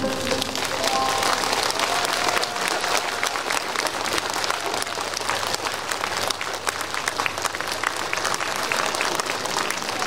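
Large audience applauding steadily as the music ends.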